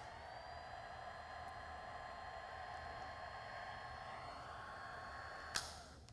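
Electric hot knife running while it sears the cut end of a zipper tape: a faint, steady high whine that rises slightly as it comes on, holds for about five and a half seconds, and ends with a click.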